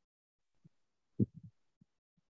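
Computer mouse clicks heard as a few dull, low thumps: a faint one, then the loudest followed by a quick run of three or four softer ones, and a last faint one.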